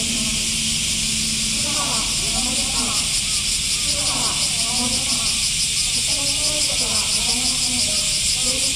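A chorus of cicadas buzzing loudly and steadily, with a fast even pulsing, and people talking faintly underneath.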